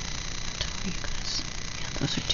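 Steady low rumble and hiss, with a few faint light clicks and rustles of sticker sheets being handled.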